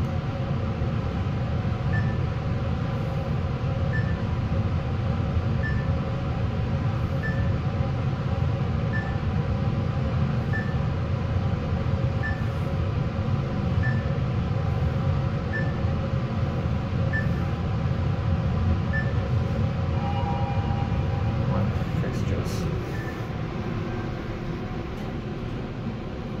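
Mitsubishi traction elevator car travelling down with a steady low ride noise. A short high beep sounds about every one and a half seconds as each floor is passed. About twenty seconds in, a two-tone chime marks arrival; a few clicks follow near the end as the ride noise eases off with the car slowing.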